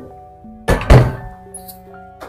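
Metal pegboard desk shelf being set down on a desk top: two quick thunks close together just under a second in.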